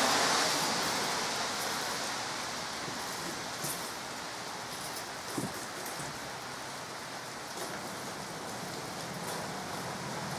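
Steady rain falling outdoors, an even hiss, with a couple of faint knocks about a third and halfway through.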